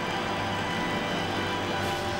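Music over a large stadium crowd applauding, the held musical tones fading away.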